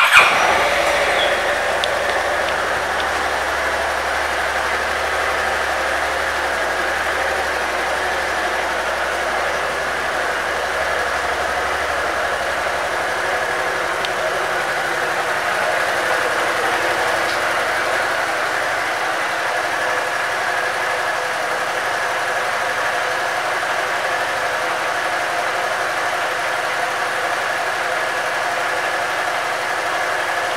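Honda DN-01's 680 cc V-twin engine starting with a brief loud burst, then idling steadily.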